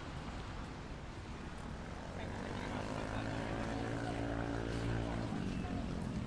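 The drone of a passing engine, swelling about two and a half seconds in and dropping in pitch as it fades near the end.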